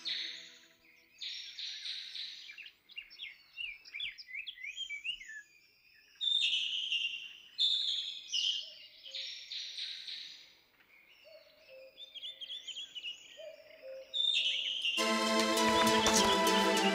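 Songbirds singing and chirping, several overlapping calls of quick rising and falling chirps and short trills. Music comes in about a second before the end.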